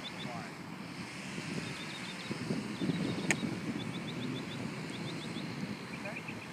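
A golf club striking through bunker sand on a bunker shot: a single sharp hit about three seconds in, over a steady low background rumble.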